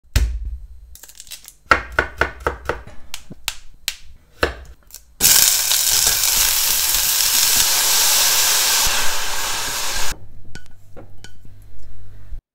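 A knife knocking on a wooden cutting board in a run of quick chopping strokes. About five seconds in, a loud, steady sizzle starts as broccoli is tipped into a pan of hot sesame oil and garlic; it stops abruptly about ten seconds in, followed by a few light clinks.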